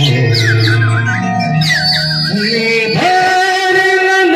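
Live stage music with an electronic keyboard: a fast, sliding, ornamented melody over a low drone, settling into a long held note about three seconds in.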